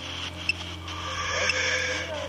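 Electronic ghost-hunting device beeping with short, evenly spaced pips about every half second over a steady hum. A hiss of noise comes in about a second in.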